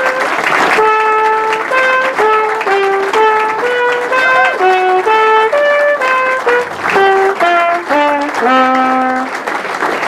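A trumpet playing a tune: a single melody line of short stepped notes, closing on a long low note near the end, with clapping coming up as it finishes.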